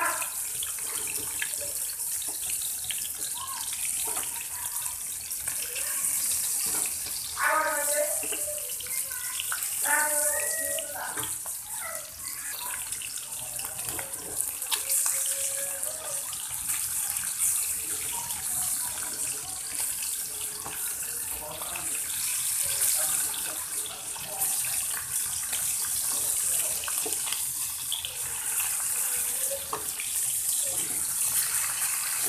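Hilsa fish pieces frying in hot oil in a pan, a steady sizzle, while they are turned over with metal tongs.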